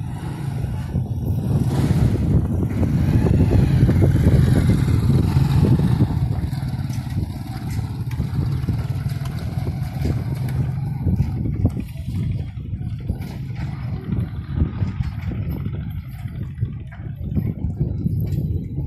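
A motor vehicle engine running, a steady low rumble that is loudest a few seconds in and then eases off slightly.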